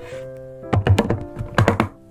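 Plastic lunch box lid being set down and snapped shut with its clip latches: sharp knocks and clicks in two clusters, about a second apart. Background music plays throughout.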